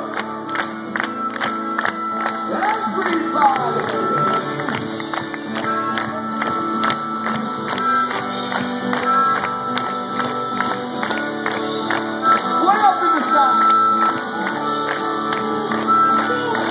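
Punk rock band playing live through a loud PA, with acoustic guitar and electric bass over a steady beat. The crowd shouts along at times.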